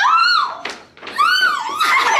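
A woman's high-pitched excited squeals: two rising-and-falling cries about a second apart, with laughter breaking in near the end.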